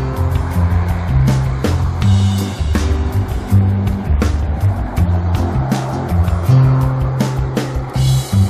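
Background music with a stepping bass line and a steady drum beat.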